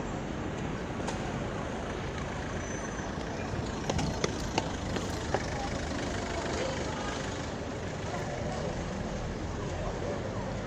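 City street noise: a steady rumble of road traffic with indistinct voices of passers-by. A few sharp clicks come close together about four to five seconds in.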